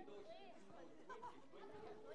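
Faint chatter of many children's voices in a hall, no words clear.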